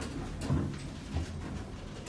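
Low steady hum of a Dover hydraulic elevator's machinery running, with a few light knocks and door-sliding noise as the car doors move.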